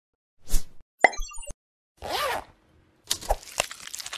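Cartoon-style sound effects for an animated logo intro: a pop, a burst of high chirps, a whoosh with a tone that rises and falls, then a quick rattling run of clicks near the end.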